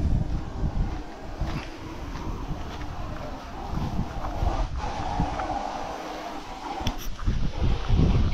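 Wind buffeting the microphone in uneven gusts, with a steadier hiss for a few seconds in the middle.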